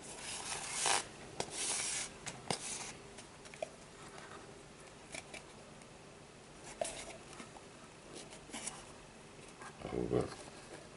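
Cord being pulled through the weave of a Turk's head knot: three short rubbing swishes in the first three seconds, then faint scattered clicks of handling.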